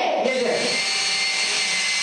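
Small pump running and water spraying with a steady hiss inside a toy model car wash, a faint high whine over it; children's voices trail off in the first half second.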